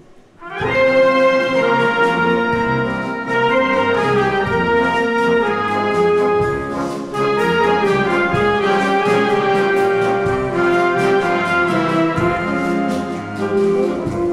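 Full military concert band of clarinets, saxophones, trumpets, trombones, tuba and percussion playing a beguine. It comes in about half a second in and carries on, with held brass and woodwind chords over a steady rhythmic beat.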